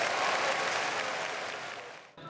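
Audience applauding, fading away near the end.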